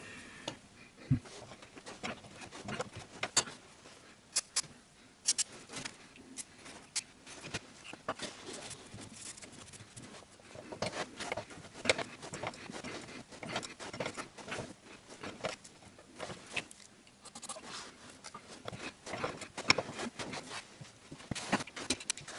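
Socket wrench working a tight bolt loose on an anti-roll bar bushing clamp: scattered, irregular small clicks and metal taps, with nothing steady underneath.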